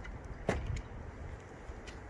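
A single sharp click about half a second in, from a motorcycle windscreen being pulled down by hand on its manual adjuster, with a fainter tick near the end over quiet outdoor background.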